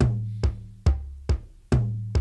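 Akai XR20 drum machine playing a slow pattern at 70 BPM: a sharp hit about every 0.43 s, the on-beat hits being kick drums with a long low ring and lighter hits falling between them.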